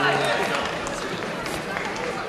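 Spectators' voices in a sports hall: overlapping chatter and calls from the crowd, easing slightly toward the end.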